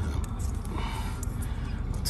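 Faint handling clicks over a steady low rumble as the shorting connection is taken off the leads of a lines test set.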